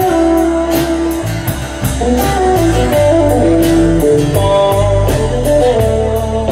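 Live band playing an instrumental passage: a lead guitar melody of held, bending notes over strummed acoustic guitar, bass and drums with regular cymbal hits.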